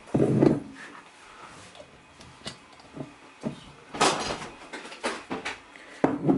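Handling noise as a glass bottle is set down on a kitchen countertop: a dull thump just after the start, a few light knocks, and a louder clatter about four seconds in.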